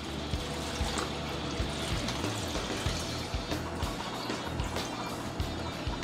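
Background music over orange juice pouring steadily from a glass jug into a plastic bowl.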